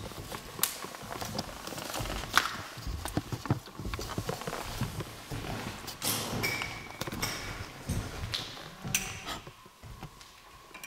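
Footsteps across a bare floor in an empty old building, with irregular knocks and bumps of the handheld camera; the sharpest knock comes about two and a half seconds in.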